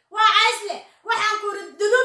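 Speech only: a high-pitched voice repeating a short phrase again and again, in segments about a second long with brief gaps between them.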